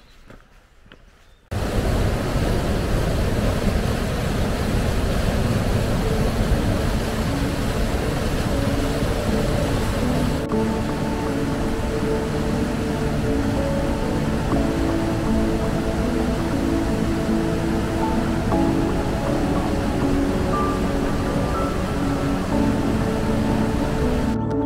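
Loud rushing of the Casaño mountain river cascading over rocks in its gorge, cutting in suddenly about a second and a half in. Soft ambient music plays over the water from a few seconds later.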